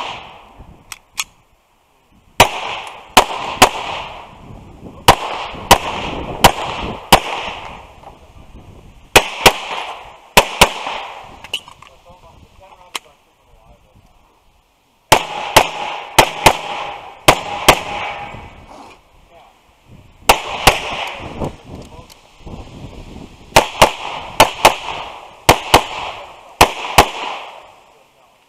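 Semi-automatic pistol fired in quick pairs and short strings of shots, the strings separated by pauses of one to three seconds.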